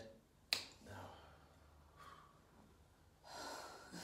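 A single sharp finger snap about half a second in, then a breathy exhale like a sigh near the end.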